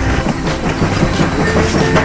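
Battery-powered TrackMaster toy diesel shunter (Salty) running along plastic track. Its motor and wheels make a steady, irregular clatter.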